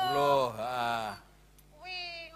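A performer's long, drawn-out vocal exclamation through a stage microphone, in two swells with a bending pitch, breaking off after about a second; ordinary talk resumes near the end.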